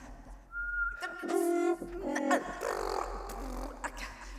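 Experimental improvised vocals from a live singer duetting with a machine-learning-generated version of her own voice. About half a second in there is a thin, high, whistle-like tone held for about half a second. It is followed by voiced sounds with a fast flutter, a few sharp clicks, and sliding pitches.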